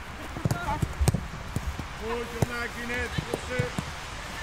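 Footballs being struck in a passing drill on a grass pitch: several sharp thuds of boots kicking the ball at irregular intervals. A player's voice calls out a few short times in the second half.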